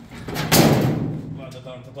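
The hood of a classic car being swung up open, with a loud clunk about half a second in that fades away over about a second.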